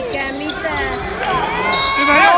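Live basketball game in a sports hall: the ball and players' shoes on the hardwood court, with short sharp knocks and squeaks, over many spectators' voices.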